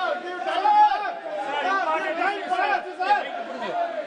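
Men's voices talking over one another without a break, a clamour of overlapping speech in a large hall.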